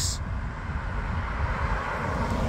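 Tyre and road noise of an approaching car on asphalt: a steady hiss that grows louder as it nears, loudest near the end.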